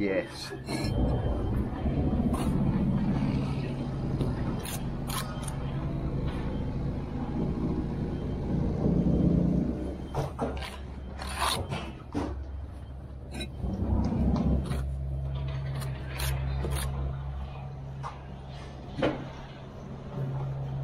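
Bricklaying close up: a steel trowel scraping mortar and bricks being knocked into place, with sharp taps and knocks scattered through. Under it runs a steady low engine hum.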